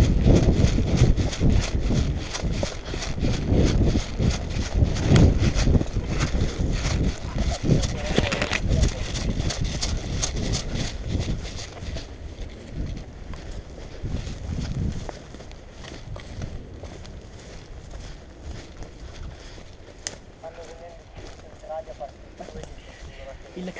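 Running footsteps through woodland brush, heard close up from a helmet-mounted camera, with gear jostling on each stride. The footfalls are loud and rapid through the first half and become quieter and sparser after about twelve seconds, as the pace eases to a walk.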